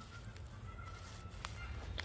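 Faint outdoor background: a low steady rumble with a few soft clicks of footsteps through grass and dry pine needles.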